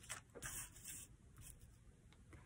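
Near silence with a few faint, brief rustles of cardstock and vellum being slid across a wooden tabletop, the clearest about half a second in.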